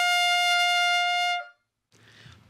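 Closing note of a short brass-sounding music jingle: one long held note that stops about a second and a half in.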